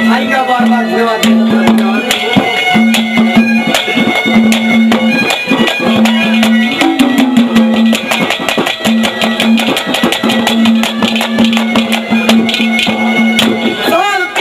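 Haryanvi ragni accompaniment in an instrumental stretch: a harmonium with reedy held notes and a busy melody over fast, steady drum strokes.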